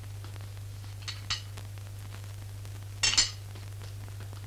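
Dishes and cutlery clinking as plates are cleared from a table: two light clinks about a second in, then a louder clatter of china near the end. A steady low hum runs underneath.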